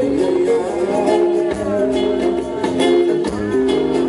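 A live band playing: acoustic and electric guitars over a drum kit and hand percussion.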